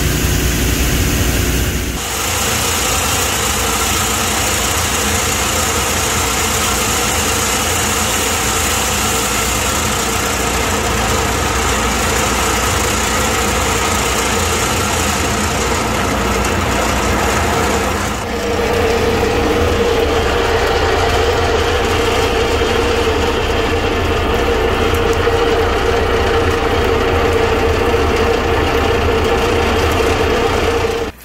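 Mechanical battery-recycling machinery running steadily while crushed alkaline batteries are processed: a continuous machine hum with a few steady tones. The sound changes suddenly about two seconds in and again about eighteen seconds in, when a steady mid-pitched hum comes to the fore.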